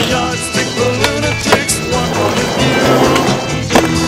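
Skateboard wheels rolling on pavement with a few sharp clacks of the board, mixed under a music track that runs throughout.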